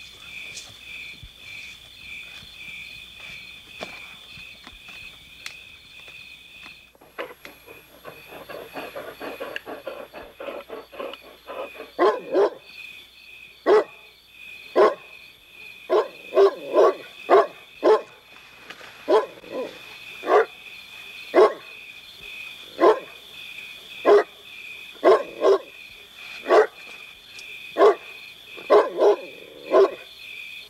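Large dog barking loudly and repeatedly from about twelve seconds in, single barks at irregular intervals of roughly a second, with softer rough sounds just before. A steady high chirring of night insects runs underneath.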